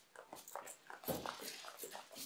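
Makeup setting spray being pumped at a face in a few faint, short spritzes.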